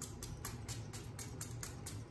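e.l.f. setting spray pump bottle being pumped rapidly, giving a quick series of short hissing sprays, about six a second.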